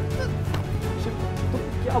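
Background music with sustained low tones, a held drone and no beat; a voice speaks one word near the end.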